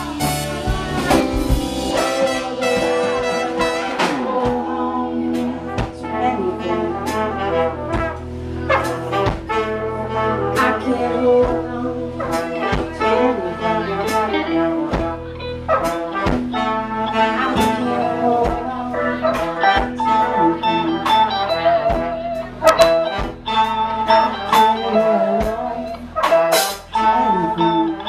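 Live band playing, with a horn section of saxophone, trumpet and trombone carrying held, wavering lines over electric guitar, bass and drums.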